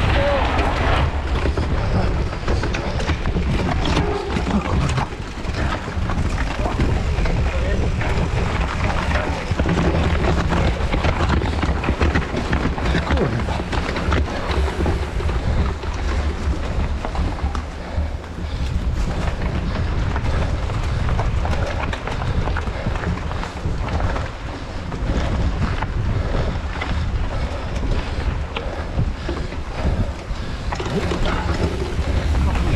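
Wind buffeting the microphone of a camera on a mountain bike ridden at race pace over dirt and forest trail, steady throughout, with frequent small knocks and rattles from the bike running over bumps.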